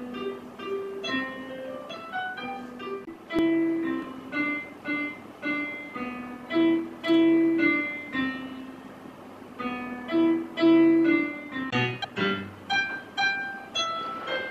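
Electronic keyboard playing a simple melody in separate notes over a bass line, the notes quickening near the end.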